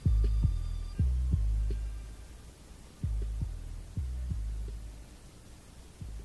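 Stripped-down hip-hop beat: deep bass kicks landing in pairs, each leaving a low bass tone that dies away, with a few faint high notes near the start. The hits grow fainter toward the end.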